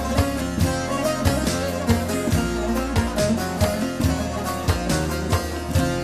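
Instrumental opening of a Turkish folk song (türkü): plucked strings playing a quick melody over a steady beat, with no singing yet.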